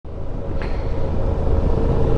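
Suzuki V-Strom 650 XT motorcycle's V-twin engine running steadily on the move, mixed with steady riding noise.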